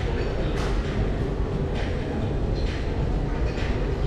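Busy indoor concourse ambience: a steady low rumble with indistinct crowd chatter.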